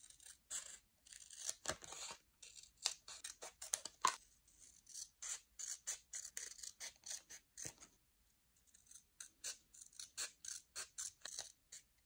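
Scissors snipping through a printed paper flyer in a quick run of short cuts, pausing for about a second two-thirds of the way through before snipping again.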